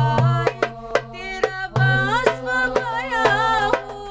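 A group of girls' voices singing an Arabic nasheed, with ornamented, wavering notes over a steady percussion beat.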